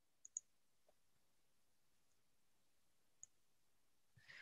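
Near silence with a few faint, brief clicks: two close together just after the start and one more near the end.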